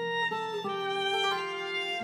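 Violin playing a slow folk tune with acoustic guitar accompaniment. A few quick notes step downward, then one long bowed note is held.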